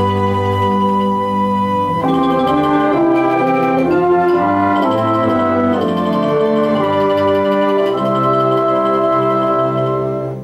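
A small instrumental ensemble plays slow, sustained chords, moving from chord to chord every second or so under a conductor's beat.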